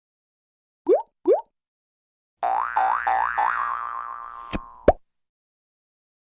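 Cartoon sound effects for an animated logo intro. Two quick rising blips come about a second in, then a pitched warble swoops upward four times over about two seconds and fades, ending in two short sharp hits.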